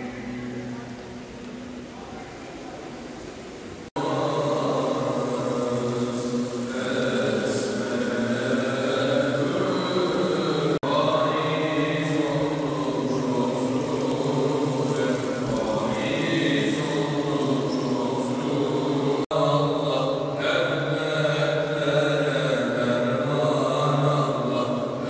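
Islamic religious chanting: a voice sings long, slowly wavering held lines. It breaks off abruptly for an instant three times, at edits in the recording.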